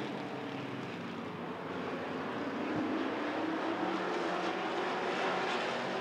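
A pack of Sportsman stock cars racing on a short asphalt oval: the engines blend into a steady drone that grows a little louder as the field comes around.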